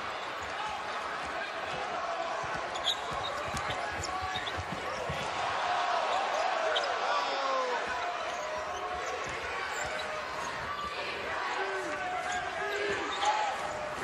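Basketball arena game sound: steady crowd noise, with a ball dribbling on the hardwood court and sneakers squeaking as players move.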